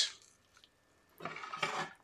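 Near silence, then just over a second in a faint, brief handling noise of a serving spoon working in a glass baking dish of chicken pot pie as it is scooped.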